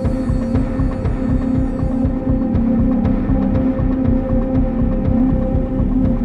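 Loud steady electronic drone: a sustained hum with a fast, low throbbing pulse of about seven beats a second.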